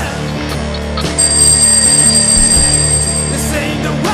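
Alarm-clock bell ringing as a sound effect over rock backing music, the ring starting about a second in and stopping shortly before the end.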